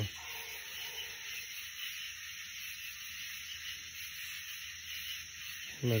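Steady high-pitched drone of a summer-night insect chorus, continuous and even.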